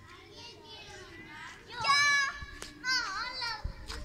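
Young girls' high-pitched squeals during a badminton game: a loud one about halfway through and another about a second later. Between them comes a single sharp tap of a racket striking the shuttlecock.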